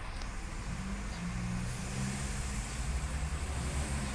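Steady low background rumble with a faint low hum.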